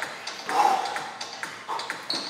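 A person's hands and trainers tapping and shuffling on a hard floor while getting down from standing into a plank, with several light taps.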